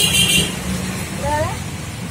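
Steady low rumble of a running vehicle or road traffic. A brief harsh, high scraping sound comes right at the start.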